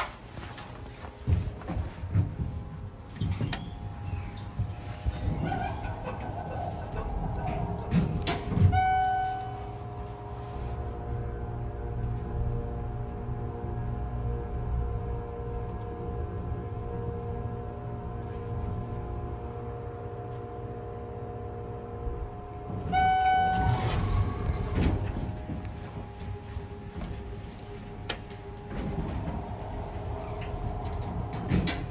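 Schindler MT hydraulic elevator: the car doors slide shut with a few knocks, a chime sounds about nine seconds in, and the hydraulic pump runs with a steady hum as the car rises. A second chime sounds as the car stops and the doors slide open.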